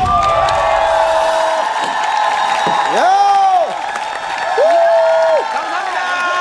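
Studio audience cheering and applauding with high-pitched screams and whoops. Two loud drawn-out shouts stand out, one about halfway through and one near the end.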